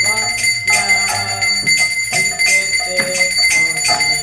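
Devotional kirtan music: a brass hand gong struck in a steady beat about twice a second and a small arati hand bell ringing continuously, over sustained melodic notes.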